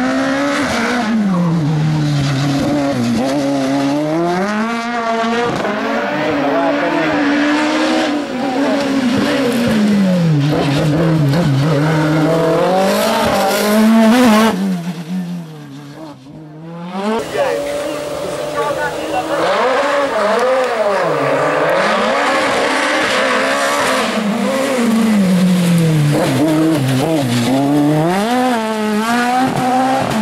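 Osella PA9/90 sports-prototype race car engine revving hard, its pitch climbing and falling again every couple of seconds as the car accelerates and brakes between slalom chicanes. The sound drops away briefly about halfway through.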